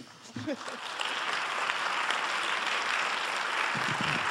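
Audience applauding. The applause starts about a second in, after a brief laugh, and then holds at a steady level.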